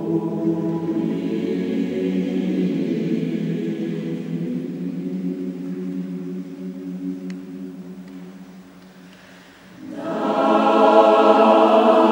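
Mixed choir singing sustained chords in a resonant stone church. The chords fade away to a quiet passage, then the full choir comes back in louder and brighter about ten seconds in.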